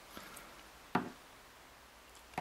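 A custom side plate being fitted back onto an Abu 5500 multiplier reel by hand: faint handling sounds, then one sharp click about a second in as it goes on.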